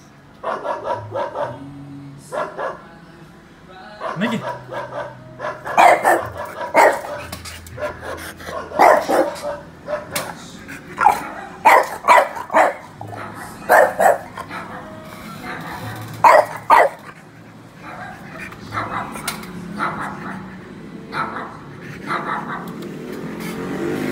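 Dog barking: a long string of short, sharp barks at irregular intervals, loudest from about six to seventeen seconds in.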